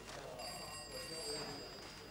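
Telephone bell ringing faintly: a high steady ring that starts about half a second in and lasts about a second and a half.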